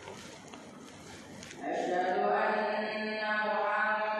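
A man's voice chanting in a mosque: after low room noise, a long, slowly wavering melodic note begins about one and a half seconds in and is held to the end.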